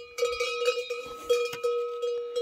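A cowbell on a grazing cow clanking irregularly, struck several times as the animal moves.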